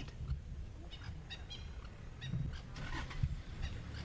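Birds giving short, repeated calls in small clusters, over a steady low rumble.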